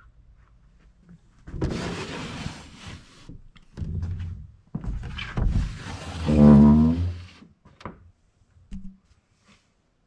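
Old glass-fronted wooden cupboard door being moved open, in two stretches of scraping with a creak in the second, then a couple of light knocks near the end.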